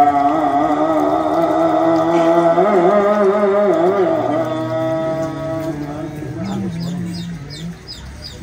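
A man's voice singing an Islamic devotional chant on 'Allah', holding long, wavering, ornamented notes. About two-thirds of the way in, a lower voice line takes over and quick high chirps join it.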